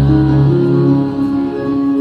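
Choir song with instrumental accompaniment: long held notes, with a deep bass note sounding through the first half and fading about halfway.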